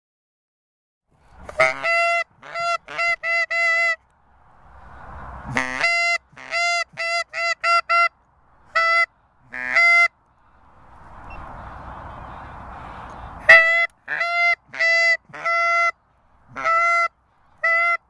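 Geese honking: short clipped calls, all at the same pitch, repeated in quick runs of several notes. There are three runs, with soft hiss between them.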